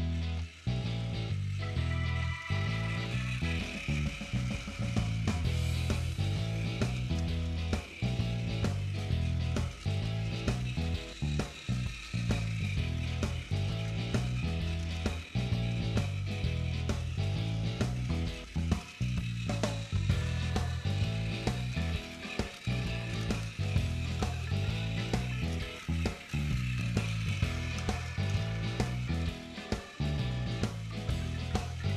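Background music with a repeating bass line, over the clicking, whirring motor and gears of a battery-powered Takara Tomy Plarail toy locomotive running on plastic track.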